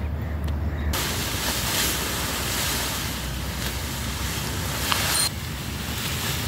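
Dry sugarcane leaves rustling steadily as a large bundle of cut cane is carried and heaved onto a cart, with a couple of faint snaps of stalks. The rustle starts about a second in and stops abruptly a little after five seconds.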